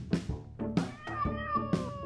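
A cat's single drawn-out meow, starting about a second in and falling in pitch at the end, over music with a steady pounding drum beat.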